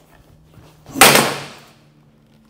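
A wooden training cane strikes a cheap lightweight all-metal walking cane: one loud, sharp crack about a second in that rings briefly and dies away. The blow bends the metal cane.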